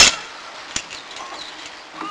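A sharp knock, then a fainter click under a second later, over quiet room noise.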